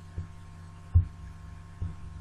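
Steady low electrical hum with three short, dull thumps; the middle one is the loudest.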